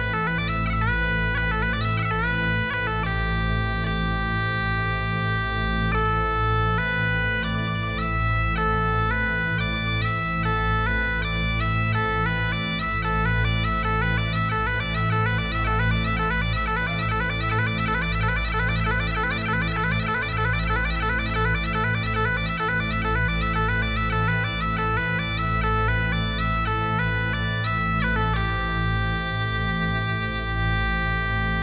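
Great Highland bagpipe playing a tune: steady drones under the chanter melody, which moves in held notes at first, then in fast runs of ornamented notes from about twelve seconds in, settling back to longer notes near the end.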